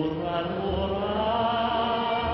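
Slow sung music: a voice singing long, held notes over accompaniment, the pitch gliding gently up and down.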